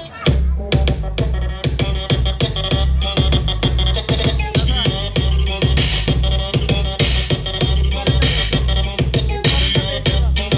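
Loud dance music with a heavy, pulsing bass beat, played through a large outdoor DJ sound system. A new track kicks in right at the start, after a brief break.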